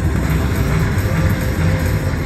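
IGT Regal Riches video slot machine playing its game music and sound effects while the last reel fills with wild symbols.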